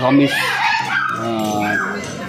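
A man speaking, his words not caught by the transcript.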